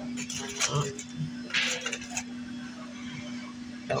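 Table sounds of handling fried pickles and ranch at a restaurant table: a few light clicks and clinks, then a short crunchy rustle around the middle. Faint background voices run under it, over a steady low electrical hum.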